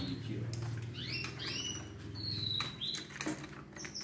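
Caged canaries chirping: a few short calls that slide upward about a second in, then a higher, clearer call about two seconds in. A steady low hum and a few light clicks run underneath.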